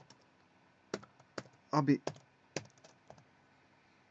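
Computer keyboard keystrokes: about half a dozen separate, sharp taps spread over a few seconds, as a command is typed into a program's input bar.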